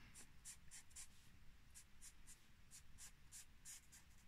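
Faint scratching of a red Sharpie permanent marker colouring in on card, in short repeated strokes a few times a second.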